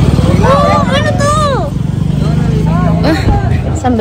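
A motor vehicle's engine running steadily as a low rumble, easing off about three seconds in, with high-pitched voices talking over it twice.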